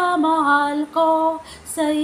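A woman singing solo in long held notes, with a short breath between phrases.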